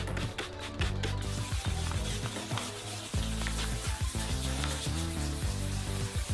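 Water is sprayed onto a plastic car headlight lens from a trigger spray bottle, then the lens is wet-sanded by hand with fine 1000-grit sandpaper, making a wet, scratchy rubbing. Background music plays underneath.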